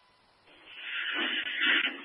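Two-way fire radio channel: silent at first, then about half a second in a transmission keys up with a hiss of static and muffled noise that grows louder.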